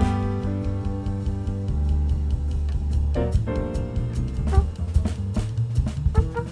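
Small jazz group playing: a saxophone holds long notes over a drum kit and bass, and a new phrase starts about three seconds in.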